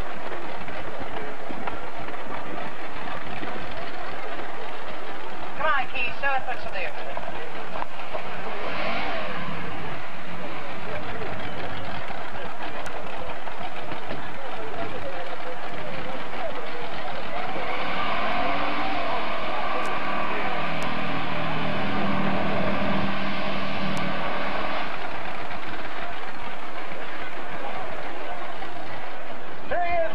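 Lifted mud truck's engine running hard as it works through a mud pit, strongest for several seconds past the middle. Voices can be heard alongside it.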